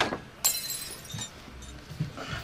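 A sudden crash about half a second in, followed by high ringing that dies away over the next second, heard on a film soundtrack.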